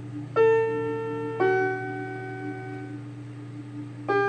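Portable electronic keyboard on a piano voice playing a slow hymn: two chords are struck about a second apart in the first half and left to ring and fade, over a held low note.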